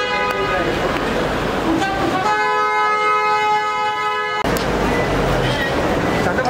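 Car horn: a blast tailing off just at the start, then a steady two-note blast held for about two seconds that stops abruptly.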